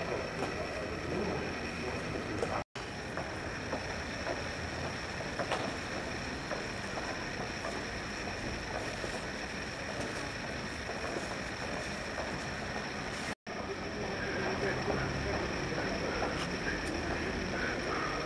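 Steady background noise, a hiss and rumble with no distinct events, cut by two brief silent dropouts where the recording is edited, about three seconds in and again about two thirds of the way through.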